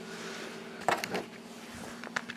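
Two short knocks and a rub of hands handling the recording camera, about a second in, over a low steady hum.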